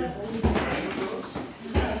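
Voices talking in the background, with two dull thumps about a second and a quarter apart from light-contact sparring on the mats.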